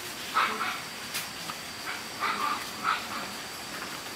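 A dog barking: a few short barks, one just after the start and a cluster around two to three seconds in.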